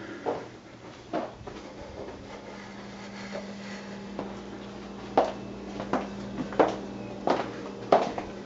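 Footsteps on a hard floor as people walk through a house, a couple of steps early on and then a steady pace of about three steps every two seconds from about five seconds in, over a steady low hum.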